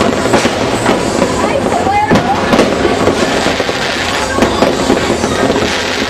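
Fireworks going off in a dense, unbroken run of overlapping bangs and crackles.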